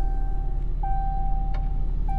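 A Cummins 6.7-litre turbo-diesel straight-six idling steadily with a low rumble. Over it, the truck's dashboard chime sounds twice, a steady electronic tone about a second long each time.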